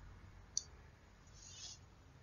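A single faint computer-mouse click about half a second in, followed by a brief soft rustle, over quiet room noise.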